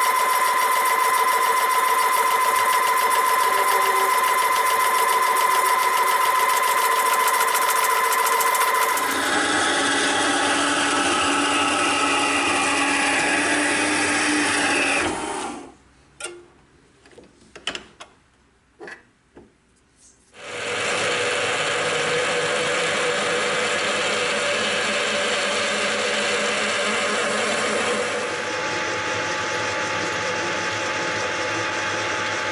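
Workshop machine tools running in turn: a metal shaper's drive humming steadily for the first several seconds, then a different machine with a falling whine. About halfway there is a lull of near quiet with a few light clicks, then machine noise runs steadily again to the end, with a lathe's chuck spinning near the end.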